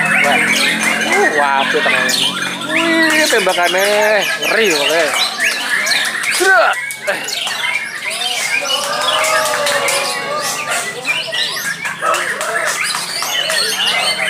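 Many caged songbirds singing at once, loud overlapping whistles and chattering calls that rise and fall quickly, with a white-rumped shama among the singers.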